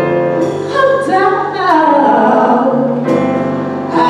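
Church choir singing over an instrumental accompaniment with a low held bass, the voices sustaining chords. Between about one and two seconds in, a lead voice bends and slides through a run above the choir.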